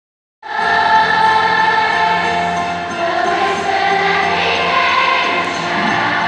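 A massed children's choir of thousands of voices singing together in an arena, holding long sustained notes. The sound cuts in about half a second in.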